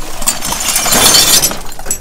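Broken glass shards clinking and crunching against each other, mixed with rustling plastic bags and cardboard, as dumpster debris is shifted by hand. The noise builds and is loudest about a second in, then fades.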